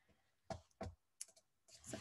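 Faint clicking at a computer: four or five short, sharp clicks spread over about a second, the last few in quick succession.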